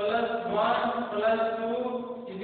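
Chanting voice or voices holding long, drawn-out notes at a steady pitch, starting abruptly at the beginning.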